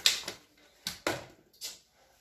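A brief rush of noise right at the start, then three short, sharp taps: two close together about a second in and one more about half a second later.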